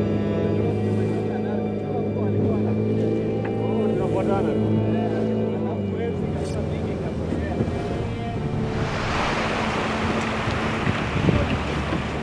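Music with long held tones, which fades out over about seven to nine seconds in. It gives way to the steady rush of a wooden boat running over choppy lake water.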